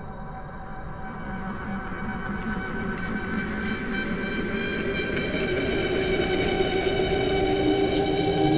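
An ambient drone of many sustained, layered tones over a low rumble, slowly swelling louder.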